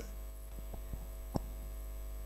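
Low, steady electrical mains hum picked up through the microphone and sound system, with two faint clicks under a second apart.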